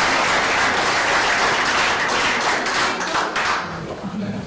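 Audience applause, many hands clapping together, fading out near the end.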